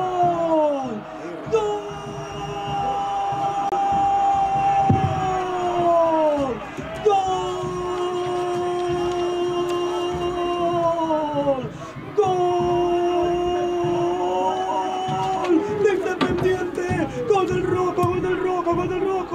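Football commentator's drawn-out goal shout, "gooool", held in several long breaths of about four to five seconds each, each one dropping in pitch as the breath runs out. Near the end it breaks into quicker excited shouting.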